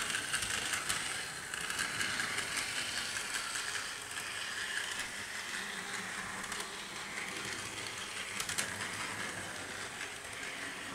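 A small Thomas the Tank Engine model locomotive running along model railway track: a steady motor whir with the wheels rattling and clicking on the rails.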